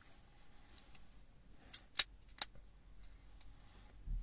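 A few short, sharp clicks over a quiet background, three of them close together about two seconds in.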